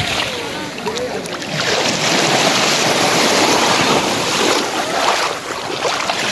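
Small waves washing onto a sandy shore, mixed with wind blowing over the microphone: a steady, even rush of noise.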